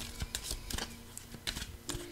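A new deck of small cards being shuffled by hand: a run of quick, irregular light clicks and flicks.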